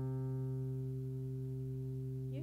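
Electric keyboard holding a sustained chord between sung lines, the notes ringing steadily and slowly fading.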